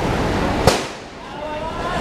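Steady street din broken by one sharp metallic clang about two-thirds of a second in, from vendors putting up market stalls of metal tube poles and tables. The din drops right after it, and voices come in near the end.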